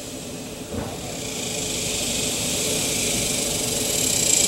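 Steady outdoor background hiss that grows gradually louder, with a faint tick about a second in.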